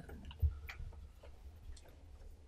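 Faint handling sounds, a folder and papers being held and passed: a soft thump about half a second in, then a few light clicks over low room hum.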